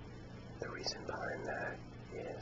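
A man whispering a few words, breathy and unvoiced, over a steady low hum.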